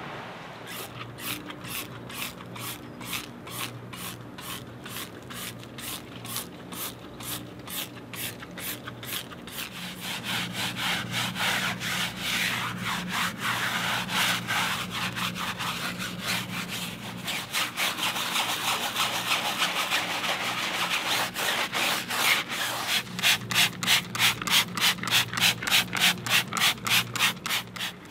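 Stiff tyre brush scrubbing a rubber tyre sidewall in quick, even back-and-forth strokes, about two to three a second. The strokes run into a denser, continuous scrubbing in the middle and are loudest and most regular near the end.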